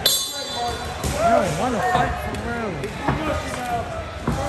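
A boxing ring bell struck once at the opening, ringing briefly as it fades within about a second, while voices shout over it in a large hall.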